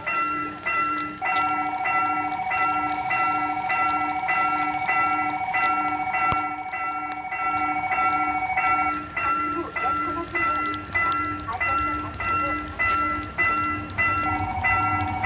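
Level crossing warning bell ringing steadily, about one and a half dings a second. Over it the approaching freight train's locomotive horn sounds one long blast from about a second in until about nine seconds in.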